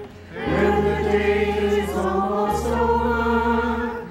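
A group of voices sings a short liturgical response together, accompanied by guitars with a sustained low bass line that changes note about halfway through. The singing comes in a moment after a brief pause and ends just before the next line.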